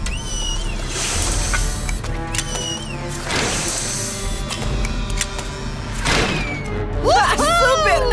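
Cartoon soundtrack: background music with sound effects, including two short whistling glides that rise and then fall, about half a second and two and a half seconds in, and hissing bursts. Voices exclaim near the end.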